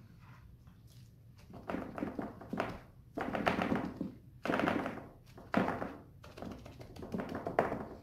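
Bare hands patting wool roving soaked in soapy water flat onto burlap, an irregular series of about a dozen wet pats starting about a second and a half in. This is the first pressing-down stage of wet felting.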